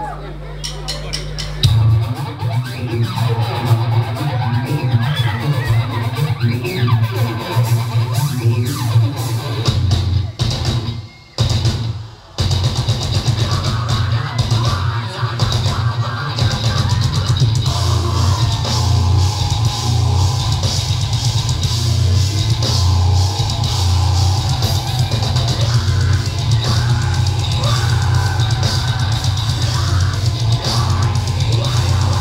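A deathcore band playing live and loud: heavy distorted guitars, bass and pounding drums. The music kicks in about two seconds in and cuts out for about a second near the middle before crashing back in.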